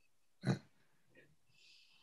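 A single short spoken "yeah" about half a second in, clipped and grunt-like. After it comes only a faint hiss near the end.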